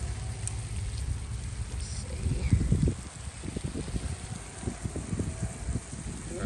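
Wind buffeting the microphone outdoors: a low rumble with uneven gusts, loudest a little past the middle.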